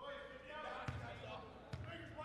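A basketball bounced twice on a hardwood gym floor, each bounce a short thud, the second about a second after the first: a free-throw shooter's dribbles before his shot. Voices carry in the gym underneath.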